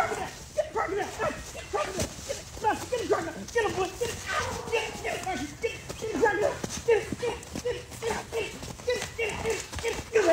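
A rapid string of short, pitched yelps and cries, two or three a second, from a Doberman and a man's voice as the dog bites and tugs at the man in a crocodile costume.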